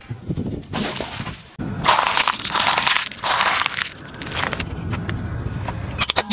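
Car tyre rolling over a rubber-banded bundle of cylindrical batteries and crushing them: a long run of cracks and crunches, loudest about two to three seconds in.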